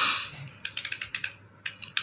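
Computer keyboard typing: quick, irregular runs of key clicks, after a brief hiss at the start.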